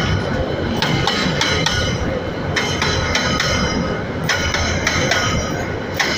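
Freight train hopper wagons rolling past, with a continuous low rumble of wheels on rail. Repeated sharp metallic clanks come several times a second, and high-pitched wheel squeal rings between them.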